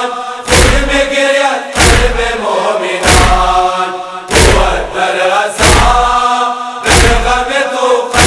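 A crowd of men chanting a noha together, punctuated by unison chest-beating (matam): a sharp collective slap about every second and a quarter, six in all.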